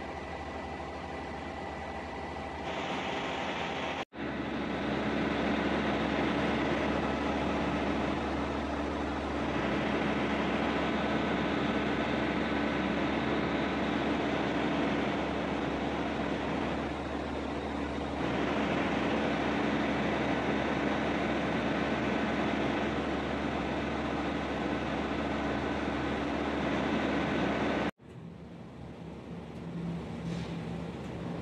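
Steady industrial machinery drone with a low hum and a hiss over it, with abrupt cuts about four seconds in and near the end.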